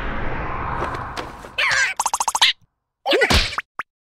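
Cartoon breath-blast sound effect: a long rumbling rush of foul breath from a bug's wide-open mouth fades out over the first second and a half. Short cartoon vocal reactions follow, one with a fast rattle, then a second brief yelp.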